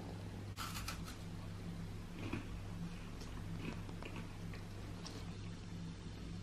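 A short crunch of a bite into a chocolate Oreo wafer bar about half a second in, then faint, scattered crunches of chewing, over a low steady hum.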